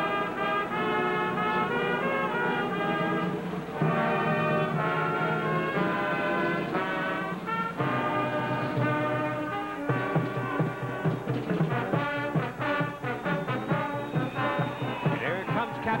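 Brass band music with long held brass chords, changing about ten seconds in to short notes over a steady, quicker beat.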